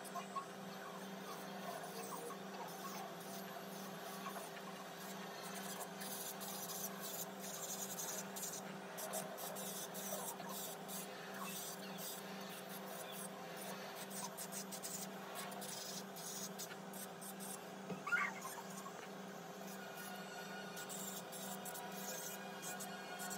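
Makartt electric nail drill running with a steady hum, its ceramic bit scratching over acrylic nails as it is worked around the cuticles. A brief rising squeal near the end.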